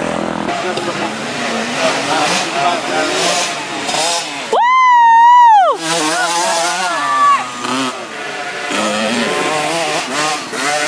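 Small youth dirt bike engine revving up and down as it rides along a dirt trail. About five seconds in, a loud high-pitched yell is held for about a second, drowning out everything else.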